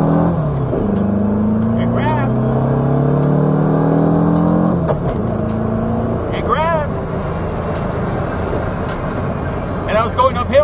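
Air-cooled VW Beetle engine heard from inside the cabin, pulling hard under acceleration and rising in pitch for about five seconds, then dropping suddenly at a gearshift and pulling on at lower revs. The clutch, with its Porsche-style pressure plate, holds under the load without slipping, though the driver feels it is right on the edge of slipping.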